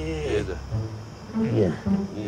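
Crickets chirping under dramatic background music, with brief voice sounds mixed in.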